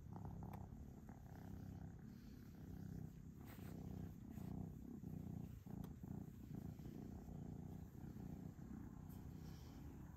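Domestic cat purring close to the microphone: a faint, low, continuous rumble that swells and dips with each breath.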